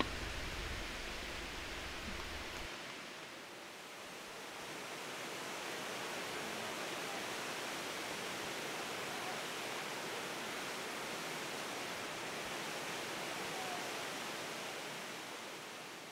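Steady hiss with no music or tones. A low rumble beneath it drops away about three seconds in, and the hiss begins to fade near the end.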